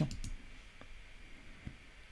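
Two faint computer mouse clicks over quiet room tone, the louder one near the end.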